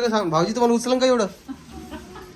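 A woman crying aloud in long, wavering wails that stop a little past a second in.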